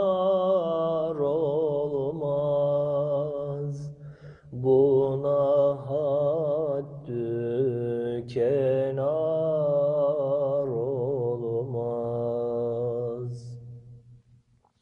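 A male voice singing a Turkish ilahi with no instruments, in long melismatic phrases with wavering ornaments over a low steady hummed drone. There are short breaths between phrases, and the singing stops shortly before the end.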